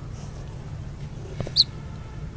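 A single short, high bird chirp about a second and a half in, just after a faint click, over a low steady background hum.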